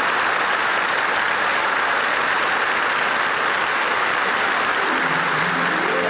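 Studio audience applauding steadily. About five seconds in, a band's brass starts the next tune under the applause.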